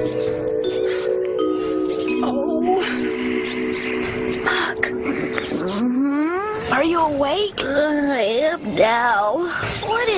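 Soft music of long held notes, then from about six seconds in a wavering, sliding squeaky sound: the squeaking of mice playing.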